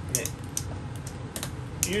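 Nidecker Supermatic snowboard binding clicking and snapping as a boot is worked into it and adjusted by hand: a few sharp, irregular plastic clicks.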